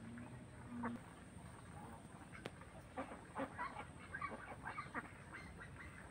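Faint waterfowl calling: a string of short repeated calls, growing busier about halfway through.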